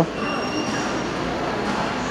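Steady background din of a large, busy food court hall: crowd noise and room hum blended together. Faint high-pitched tones sound briefly in the first second.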